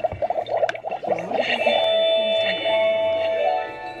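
Toy magic cauldron playing an electronic chime tune, a few held notes for about two seconds, as it lights up when the potion is activated.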